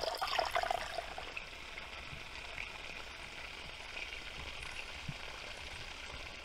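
A small trickle of water splashing steadily down a woodland bank. It is a little louder in the first second, then quieter and even.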